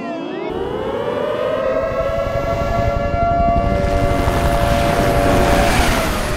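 Air-raid siren winding up from a low pitch to a steady, held wail over a low rumble that grows louder; the wail stops just before the end.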